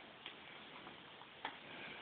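Quiet handling of braided hair and hairpins as the braids are pinned into a bun: two small clicks, one about a quarter second in and a sharper one near one and a half seconds, over faint room hiss.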